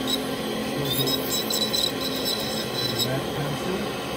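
Dental lab handpiece running a bur against a stone dental model, grinding away the stone, with a high steady tone from the motor over the grinding noise.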